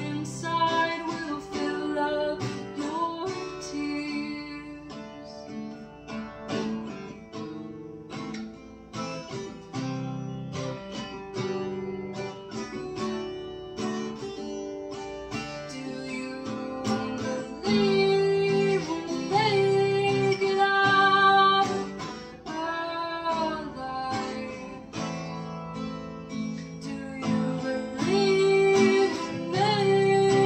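Steel-string acoustic guitar strummed in a steady chord rhythm, with a woman singing over it.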